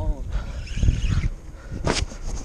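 Handling noise on a head-mounted action camera: scuffing and rubbing through the middle and a sharp knock near the end as a hand strikes the camera, after a brief voiced sound at the very start.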